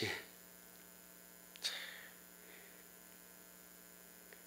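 Faint, steady electrical mains hum in the pause between words, with one brief soft rustle about one and a half seconds in.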